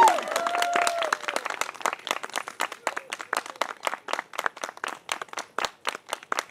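Audience clapping, loud at first and tapering off, with a voice calling out briefly near the start.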